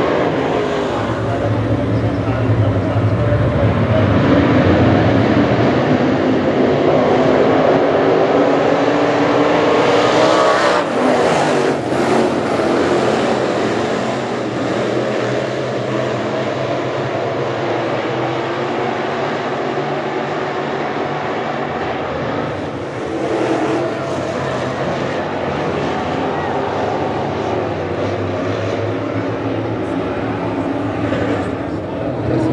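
A pack of crate dirt late model race cars running laps, their V8 engines overlapping in a loud, shifting drone that rises and falls as cars rev through the turns. It is loudest as the pack passes close, about ten seconds in, and eases off a little after.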